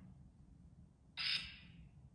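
A short, harsh, squawk-like burst of noise from a handheld spirit-box style ghost-hunting device, starting about a second in and fading out after about half a second.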